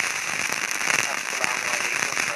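Crackling, hissing noise on an open telephone line coming through the studio feed, with no voice over it; the line is noisy.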